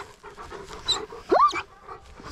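An excited working farm dog whining, with one short rising whine about one and a half seconds in.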